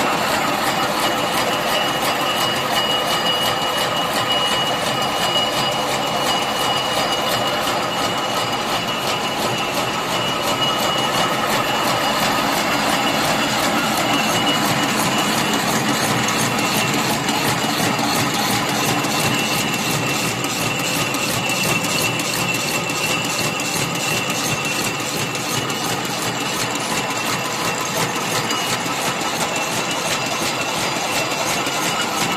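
Barbed wire making machine running steadily: gears, shafts and the twisting head clatter in a fast, even rhythm over a steady high whine as wire is fed and twisted.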